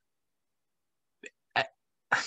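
Silence for over a second, then a faint tick and a short, sharp intake of breath about a second and a half in.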